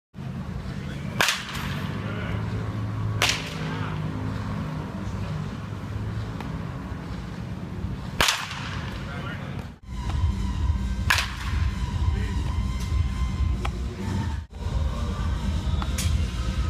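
A baseball bat hitting pitched balls in a batting cage: four sharp cracks, about a second in, at three seconds, past eight seconds and at eleven seconds, over a steady low hum.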